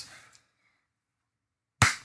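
Silence, broken near the end by one short, sharp noise lasting about a fifth of a second.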